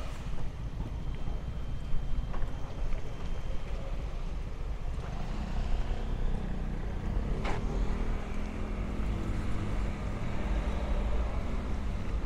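Steady low outdoor rumble with a faint hiss above it and one sharp click about seven and a half seconds in.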